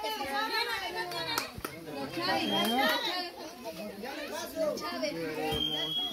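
A crowd of children talking and calling out over one another, many high voices overlapping at once.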